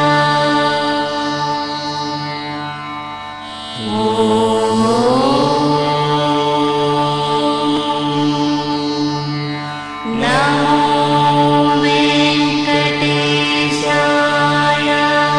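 Indian devotional music with mantra-like chanting: long held notes over a steady drone, a phrase rising in pitch about four seconds in and another beginning about ten seconds in.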